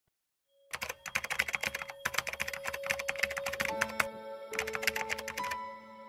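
Rapid computer-keyboard typing clicks, a typing sound effect, over a few soft sustained musical notes. The typing pauses briefly about four seconds in and stops shortly before the end.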